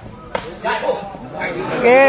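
A single sharp crack about a third of a second in: a sepak takraw ball being struck hard.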